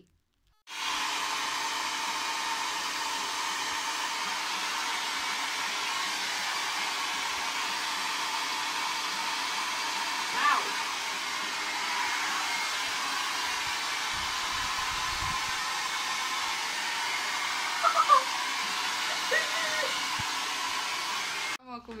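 Handheld hair dryer blowing steadily on one setting, a constant rushing with a faint whine in it, drying a child's hair. It starts abruptly just under a second in and cuts off near the end.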